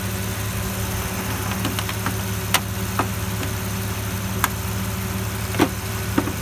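Jeep Cherokee engine idling steadily with the AC compressor engaged and the system charging. A few sharp clicks cut through it about two and a half, three and four and a half seconds in, and again shortly before the end.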